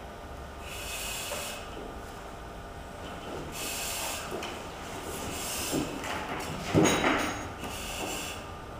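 Firefighter breathing on an SCBA facepiece, the demand regulator hissing with each inhalation about every two to three seconds. Turnout gear and the air pack rustle against the mat, with a louder rustle and thump about seven seconds in as he rolls onto the pack.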